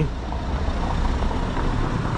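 A car passing close by at low speed on a cobblestone street, its engine and tyres a steady rumble.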